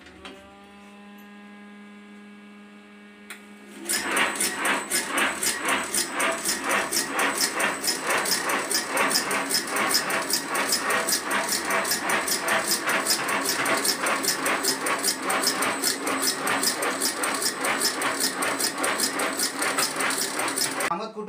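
Automatic agarbatti (incense-stick) making machine: its electric motor hums and rises in pitch for the first few seconds, then at about four seconds the machine starts a fast, even, rhythmic clatter of about five strokes a second as it presses incense paste onto bamboo sticks.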